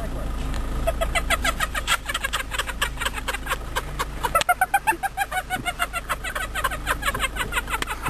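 Many birds chirping and chattering in quick, repeated short calls, with a faint low steady hum underneath.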